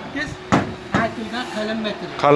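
Two sharp knocks on a steel gate panel, about half a second apart, with quiet talk underneath.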